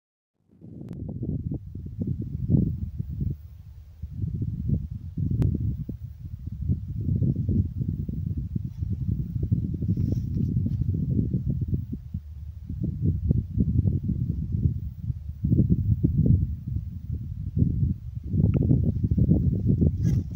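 Wind buffeting the microphone: a low, gusting rumble that swells and fades every second or two.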